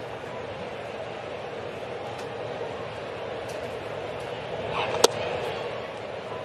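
Steady ballpark crowd murmur. About five seconds in comes a single sharp pop of a 93 mph sinker smacking into the catcher's mitt, a pitch taken for a ball.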